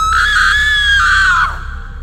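A long, very high-pitched woman's scream, held for about a second and a half and then falling away, over a low steady drone.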